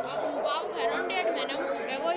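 Several people talking at once: overlapping chatter of voices, some of them high-pitched, with no single clear speaker.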